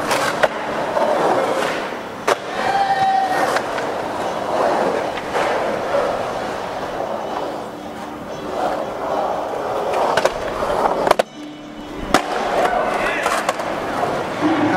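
Skateboard wheels rolling on a concrete skatepark bowl, with several sharp clacks of the board striking the concrete.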